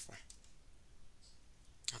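Faint clicks and taps of a stylus on a pen tablet as a handwritten digit is drawn, over low room hiss.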